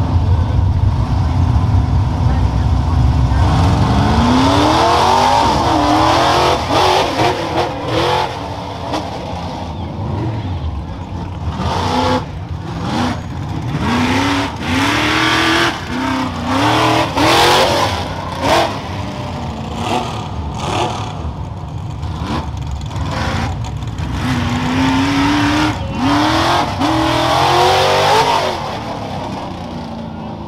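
Modified 4x4 rough truck's engine idling, then revving hard as the truck launches down a dirt course, its pitch rising and falling again and again with the throttle. It gets quieter near the end as the truck moves away.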